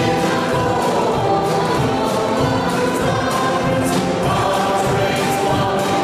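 Church congregation and choir singing the closing hymn with instrumental accompaniment and a steady beat of light percussion about twice a second.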